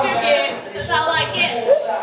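Indistinct speech: people talking in a room, words too unclear for the transcript.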